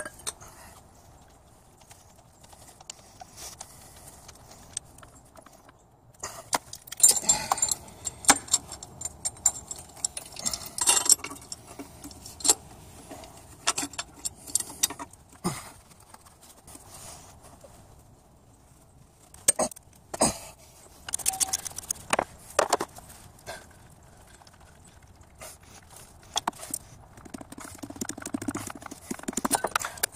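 Scattered metallic clinks and knocks of hand tools and engine parts being handled, in irregular clusters with quieter stretches between.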